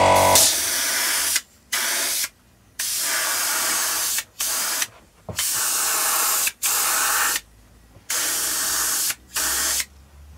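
Paint spraying in short, repeated bursts: about eight hisses that start and stop with brief gaps between them, as the paint is laid on in start-and-stop passes. A steady hum cuts off just before the first burst.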